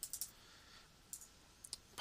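Faint computer keyboard keystrokes typing a short word: three quick clicks at the start, then a few scattered clicks through the second half.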